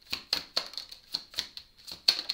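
Deck of oracle cards being shuffled hand to hand, the cards clicking against each other about four times a second.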